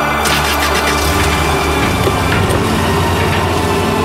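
Van engine started with the key about a quarter second in, then running steadily, under background music.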